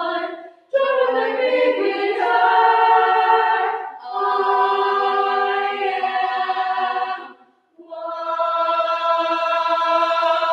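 High school girls' choir singing a cappella in harmony: held chords in phrases broken by short pauses for breath about every three to four seconds.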